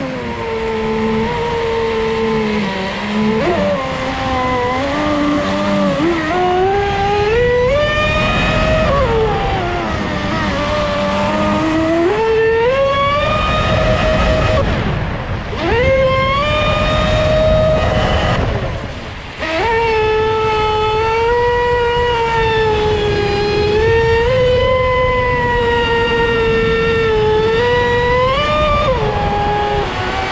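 Leopard 4082 2000kv brushless motor driving a Dominator RC boat hull, a whine over a rushing noise, its pitch rising and falling with the throttle. It drops off twice around the middle, briefly each time, then climbs back up.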